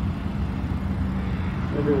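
Modern Hemi V8 drag cars idling, a steady low rumble, with a voice starting near the end.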